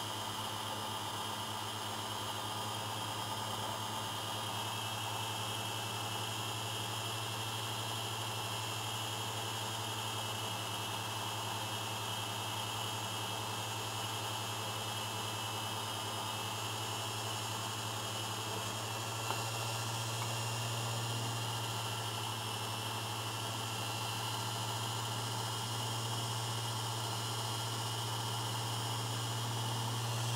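Small bench lathe running at a steady speed, a constant motor hum with an even hiss over it, as a model-diesel piston spinning in its chuck is polished down to size with 800-grit wet abrasive paper.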